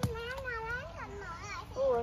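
A toddler's high voice babbling in long, wavering rising-and-falling tones, with a brief tap right at the start.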